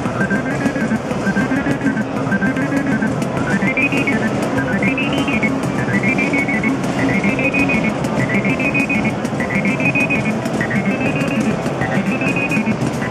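Korg Monotribe analogue synthesizer playing a looping sequenced pattern. The upper line swoops up and down about once a second, its sweeps changing shape as the knobs are turned.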